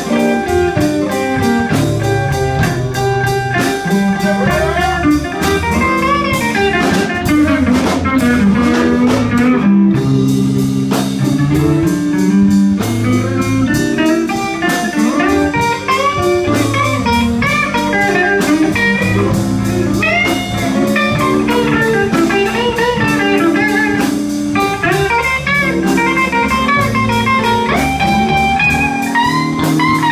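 A live blues band playing an instrumental passage: electric guitar leads with bent notes over bass and drum kit.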